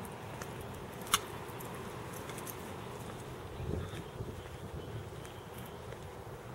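Outdoor background noise with faint footsteps on concrete and a single sharp click about a second in, then a dull thump near the middle.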